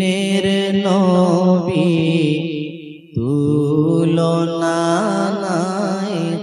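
A man singing a Bengali naat (Islamic devotional song) in long, wavering held notes. The voice breaks off briefly about three seconds in, then takes up the next phrase.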